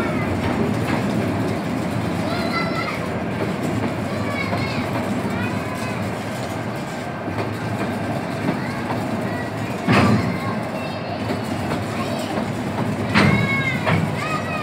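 Loaded freight wagons rolling over a steel railway truss bridge: a steady rumble, with two sharp bangs about ten and thirteen seconds in.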